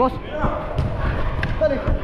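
Thuds of a football being kicked and running feet on artificial turf, a few sharp strikes spread through the two seconds, with players' brief shouts over them.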